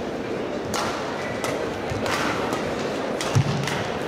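Badminton rackets striking the shuttlecock during a fast doubles rally: about half a dozen sharp cracks, irregularly spaced, the heaviest about three and a half seconds in with a deep thump. Steady arena crowd noise runs beneath.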